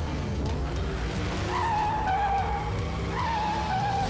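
Cartoon race-car sound effects: two tyre squeals, each a high screech that dips slightly in pitch and then holds, the first about a second and a half in and the second near the end, over a low steady drone.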